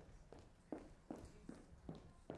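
Quiet footsteps on a stage floor, walking at a steady pace of about two to three steps a second.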